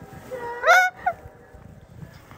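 A loud, high-pitched cry that rises and then falls in pitch, followed about a quarter second later by a short second cry.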